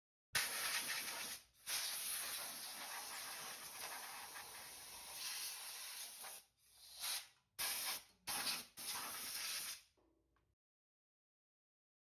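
A hissing spray: one long burst, then several short ones, cutting off about ten seconds in.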